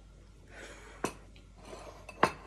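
A person breathing softly through the nose while chewing, two breaths, with one sharp click about a second in.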